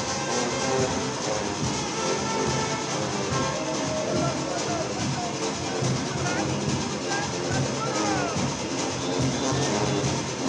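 A Junkanoo band playing, brass horns sounding over a dense, steady wash of music, with voices shouting over it.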